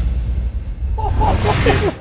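Channel logo sting: a deep bass rumble under a whoosh that swells and rises, with short sliding tones in its second half, cutting off abruptly near the end.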